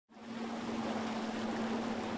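A Ranger fishing boat's outboard motor running steadily on the water: a steady hum under a haze of water and wind noise, fading in from silence at the start.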